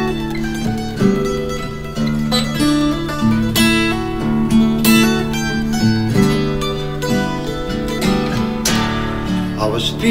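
Acoustic guitars playing an instrumental passage of a folk-country song, strummed and plucked, with no singing.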